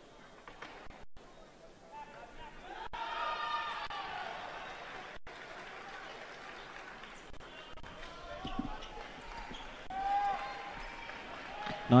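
Faint fencing-hall sound: scattered thuds of fencers' footwork on the piste, with distant voices rising and falling in the hall.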